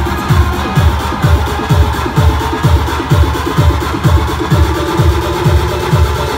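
Future house dance music played loud over a club sound system, driven by a steady kick-drum beat under dense synths, with a held synth note coming in near the end.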